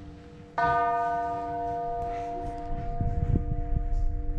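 A bell struck once about half a second in, its clear tone ringing on and slowly fading over the still-sounding hum of an earlier strike. Low rumbling knocks come in near the end.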